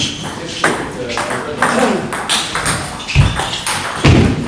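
Table tennis ball being struck and bouncing in play, a sharp click roughly every half second, with voices talking in the hall.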